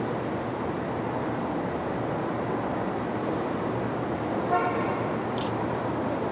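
Steady city street traffic noise, with a brief car horn toot about four and a half seconds in and a short high hiss just after it.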